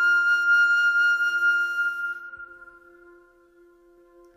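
New-age music: a long held flute note fading away about two seconds in, over a soft low sustained tone that carries on into a near-quiet pause.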